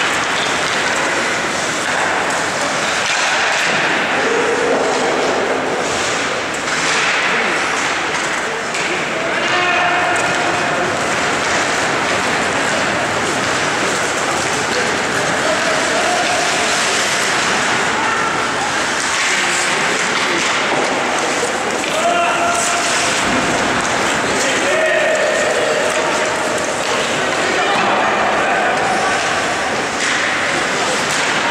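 Ice hockey game in play in an indoor rink: scattered shouts and calls over a steady wash of skates, sticks and puck on the ice, with occasional knocks and thuds.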